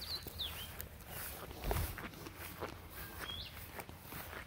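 Faint, irregular footsteps of a person walking through long grass along a path, with one firmer step about two seconds in.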